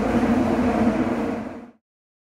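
Running noise inside a Tokyo Metro subway car, a steady rumble with a low hum, fading out a little before the end.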